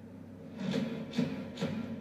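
Instrumental backing track: a low held drone with three short percussive hits in quick succession about a second in.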